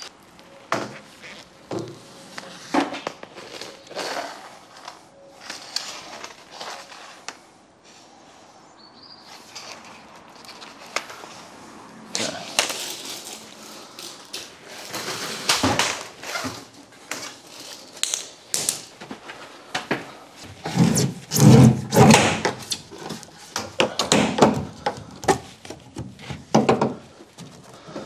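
20 mm PVC conduit being handled, bent over a bending spring and pushed up against a wall. The sound is irregular knocks, clicks and scrapes of plastic pipe, busiest in the second half.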